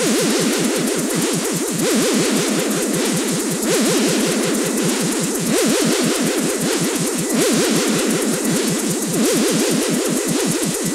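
Electronic dance music from a DJ mix with no kick drum: a synthesizer line sweeping rapidly up and down in pitch several times a second over a bright wash of noise. The texture shifts about every two seconds.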